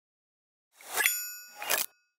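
Logo sting sound effect: two bright, metallic ding-like chimes, each swelling up quickly and ringing, the first a little under a second in and the second about half a second later, cut off short.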